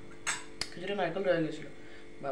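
A brief clatter followed by a single sharp clink of kitchenware, both within the first second.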